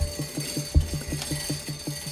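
Chain-operated roller shutter door being hauled up by its hand chain: an even run of quick clicks, about seven a second, with one heavier thump just under a second in, over background music.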